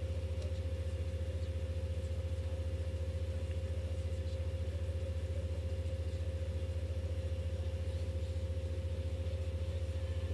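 A steady low droning hum with a fast, even flutter, and a faint steady higher tone above it.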